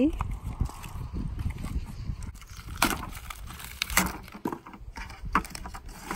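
A plastic ride-on toy tractor being pulled out of its cardboard box: scattered knocks and cardboard rustles, a few sharp ones in the second half, over a low steady rumble.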